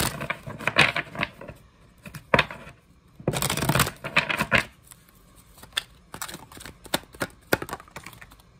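A deck of oracle cards shuffled by hand: bursts of flicking, fluttering card edges, the longest lasting about a second from three and a half seconds in, then a run of short sharp clicks near the end.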